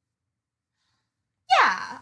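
Silence for about a second and a half, then a person's voice comes in loudly with a breathy sound falling in pitch, running straight into speech.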